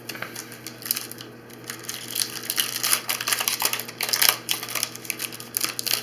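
Foil wrapper of a Pokémon TCG booster pack crinkling and tearing as it is handled and opened, a dense run of quick crackles that thickens about two seconds in.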